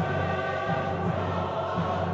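Mixed chorus singing slow, sustained chords with an orchestra, over a low note repeated in the bass.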